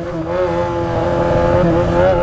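Yamaha XJ6 inline-four motorcycle engine running steadily under way, its note rising a little in pitch in the first half second and then holding even.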